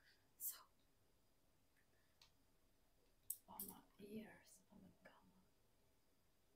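A woman's soft whispering close to the microphone, faint and broken by a breath about half a second in, with a quiet stretch of whispered voice in the second half.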